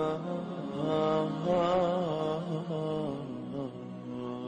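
A single voice chanting a slow melody in long, wavering, drawn-out notes.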